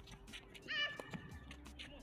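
Athletic shoe squeaking on a hard tennis court, one short high squeal about three-quarters of a second in, followed shortly by the crack of a racket striking the ball.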